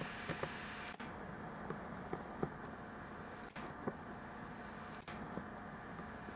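Quiet room tone, a low steady hiss with a faint hum, broken by a few faint soft clicks and taps.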